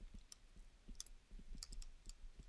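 Faint, irregular ticks of a stylus tip tapping and sliding on a tablet screen during handwriting.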